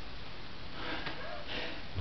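A man's short sniff through the nose, taking a breath between sentences, over faint room noise.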